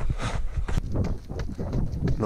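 Running footsteps on a dirt-and-gravel track, a quick regular beat of about three to four strides a second, with low wind rumble on the camera microphone.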